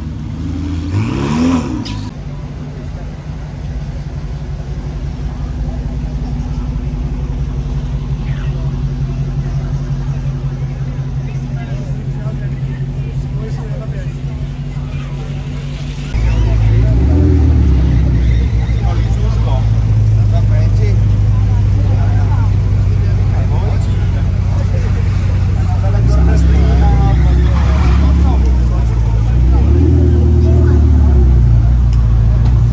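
Sports-car engines at walking pace. A Ferrari V8 idles with a short rev about a second and a half in. Partway through, a Dodge Challenger's deeper, louder engine takes over and rolls off with rising revs, and more revs follow near the end.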